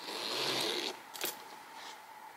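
The metal top zipper of a Louis Vuitton Coussin PM leather handbag being pulled open in one run of about a second, followed by a single faint click.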